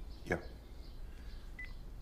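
A single spoken "yeah", then quiet room tone with one faint, very short high beep from a phone as the call is ended.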